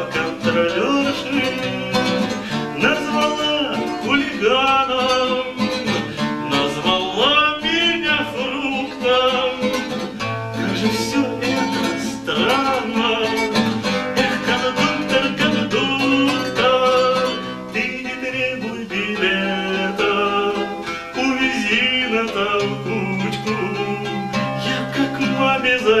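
Acoustic guitar played steadily with a man singing along to it.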